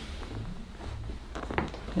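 A couple of quiet pops from the ribs and mid-back as a chiropractor thrusts down on a supine patient in an anterior thoracic adjustment, about one and a half seconds in.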